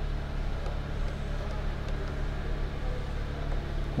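Kia Cadenza's 3.3-litre V6 idling steadily at about 1,200 rpm, a low even hum heard from inside the cabin.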